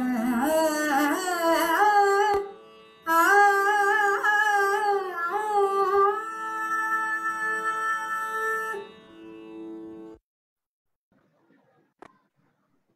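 A woman singing a Sanskrit verse in Carnatic style, her voice gliding and ornamenting each note over a steady drone. Near the middle she holds one long note, then the voice stops and the drone fades out about ten seconds in.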